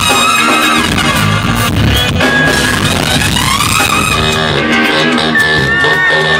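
Live funk-rock band playing loudly: electric guitar, bass and drum kit under a horn section of trumpet and saxophones, with sliding melodic lines over the groove.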